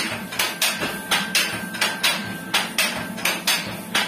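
Loom mechanism with a spring-loaded brake lever running, giving metallic knocks in a steady rhythm of about three a second.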